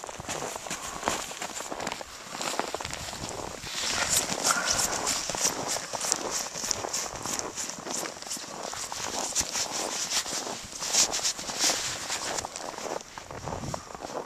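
Footsteps crunching in snow, a steady run of crisp crunches that grows louder about four seconds in.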